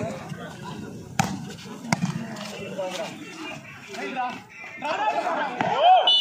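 Spectators' chatter around a volleyball rally, with two sharp smacks of a hand hitting the ball less than a second apart early on, and a loud shout from the crowd near the end.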